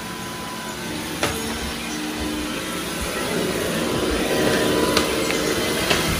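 Robot vacuum running steadily with a toddler sitting on top of it, its motor and brushes humming and slowly growing louder as it labours under the weight, barely able to move. A couple of faint clicks come through.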